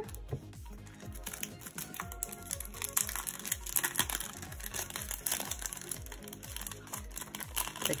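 Crinkling and rustling of clear plastic sticker sleeves being handled and shuffled, a steady irregular crackle, with background music underneath.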